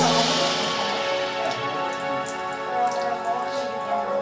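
A burst of splashing, dripping water that fades over about two seconds, under soft background music.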